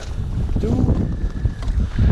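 Wind buffeting an open-air camera microphone, a steady low rumble, with one short spoken word about half a second in.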